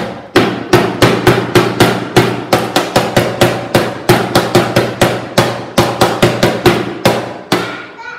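A classroom percussion instrument beaten steadily with a stick, about four loud ringing strikes a second, stopping shortly before the end. The children are acting out how sound travels from a source to the ear.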